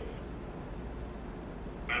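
Quiet room tone with a low steady hum while a phone call connects, ending in a short spoken "yes".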